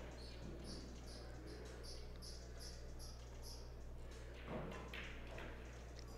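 Quiet hall room tone with a quick string of about ten faint, short, high-pitched chirps over the first few seconds, then a soft low bump near the end.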